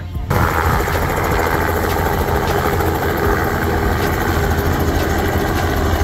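Small helicopter flying low overhead: a fast, steady chop of the rotor blades over a low engine rumble, starting abruptly just after the start.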